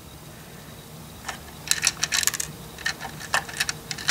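Small plastic LEGO pieces clicking and clattering against each other and the plastic bricks as they are handled into a toy truck's compartment: irregular light clicks starting about a second in, in a few clusters.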